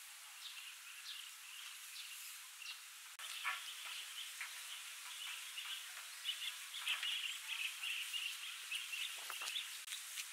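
Birds chirping and calling, the chirps growing thicker and louder about three seconds in. A couple of light knocks sound, one shortly after the chirping thickens and one near the end.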